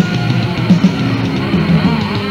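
Death/doom metal band playing on a lo-fi 1980s demo recording: distorted electric guitar over drums, with strong low hits several times a second.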